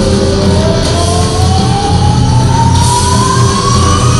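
Live rock band playing in a large arena, heard from the audience: full band sound with one long sustained note sliding slowly upward in pitch.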